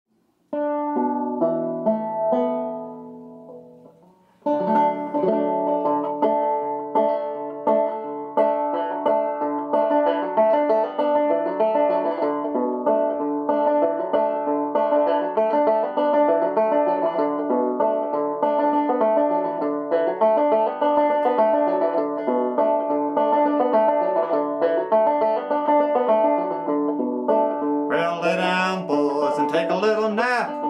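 Five-string banjo in dBEAB tuning played two-finger thumb-lead style: a first chord rings out and fades, then steady picking of the tune begins about four seconds in. A man's voice starts singing near the end.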